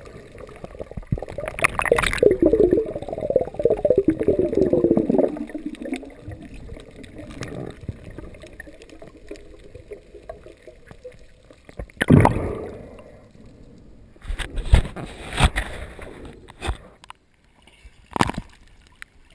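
Muffled water sound through an underwater camera housing: a few seconds of gurgling and churning early on as the diver swims, then a quieter stretch, then several short loud splashy bursts in the last third.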